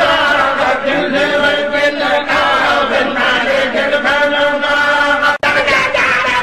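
Voices chanting religious verses in a slow melody with long held notes. The sound cuts out for an instant about five seconds in.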